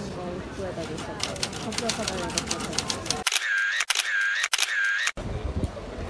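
Manual typewriter keys clattering in quick, irregular strokes over nearby voices and street chatter. About three seconds in the sound cuts to three identical short, high, wavering tones, then to open street noise.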